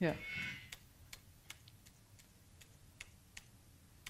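A short spoken "yeah", then faint, irregular clicks, about eight in three seconds, from keys being pressed on a MacBook laptop.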